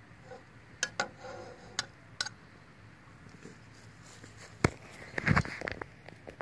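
A metal spatula clicking lightly against a steel frying pan four times, over a low steady hum. Past the middle comes one sharp knock, then a quick run of knocks and thumps.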